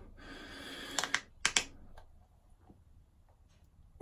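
A few sharp plastic clicks and taps, clustered about a second to a second and a half in, from an aftershave splash bottle being picked up and its cap opened, then only faint small ticks.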